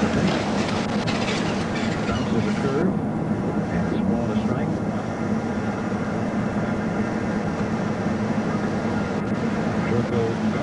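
Steady hum and rumble inside a parked police car, with faint, indistinct voices in the first few seconds.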